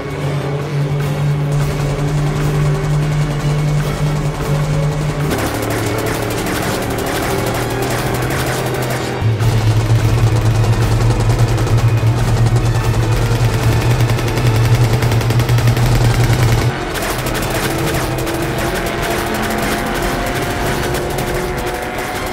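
Action-film soundtrack of rapid automatic gunfire mixed over dramatic music during a car chase, with vehicle engine sound underneath. It grows louder about nine seconds in and drops back about seven seconds later.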